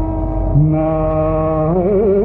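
Male Carnatic vocalist singing a Sanskrit sloka in free, unmetred style. After a short gap, a note is held for about a second, then it breaks into quick oscillating ornaments (gamakas) near the end.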